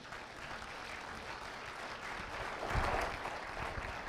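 An audience applauding, with a short low thump about three seconds in.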